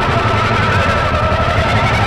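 Loud, dense distorted heavy music from a grindcore/sludge band: fuzzed-out guitars holding a droning tone over rapid, even drum hits.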